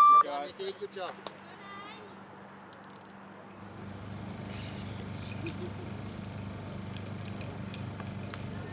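The tail of a loudspeaker announcement at the very start, then faint voices and outdoor background noise: a steady low hum, joined about three and a half seconds in by a steady low rumble.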